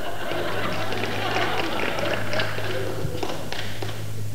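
Live theatre audience murmuring and laughing, with a few light taps in the second half, over a steady low hum.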